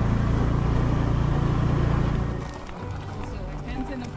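Motor scooter running steadily while riding, with a low engine drone, cutting off about two and a half seconds in to a quieter mix of voices.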